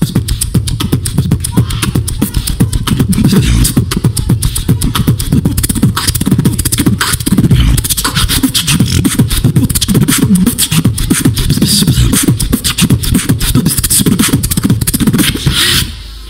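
Human beatboxing into a handheld microphone over a PA: a fast, dense, technical run of vocal clicks and snares over deep bass tones, with no pauses.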